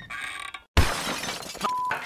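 Cartoon crash sound effect of a sign falling apart: a loud sudden crash of breaking, clattering debris about three-quarters of a second in, followed near the end by a short censor bleep.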